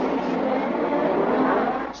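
Engine of a 1986 turbocharged Formula One car running at speed on track, heard over TV broadcast audio, fading away near the end.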